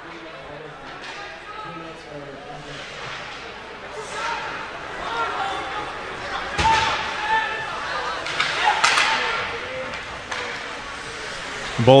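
Game sound in an echoing ice rink: scattered voices and calls from spectators and players over the play, with one sharp bang from play at the boards about halfway through.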